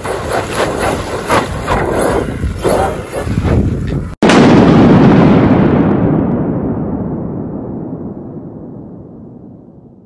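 A gas RC car's engine revving hard as it spins on gravel, with a laugh at the start. Just after four seconds the sound cuts out and a loud, deep explosion-like boom follows, its rumble fading slowly away.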